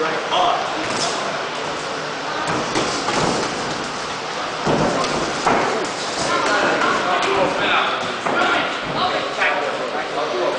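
Boxing gloves thudding as punches land in sparring: a series of sharp thumps, the loudest about five seconds in, over voices in the gym.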